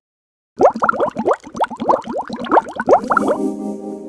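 Closing sound logo: a quick run of short, upward-sliding notes for about three seconds, ending in a held chord that fades out.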